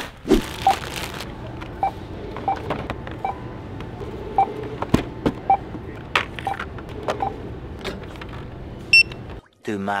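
Self-checkout barcode scanner beeping as items are scanned, short beeps about once a second, with a higher-pitched beep near the end. A sharp knock sounds about halfway through.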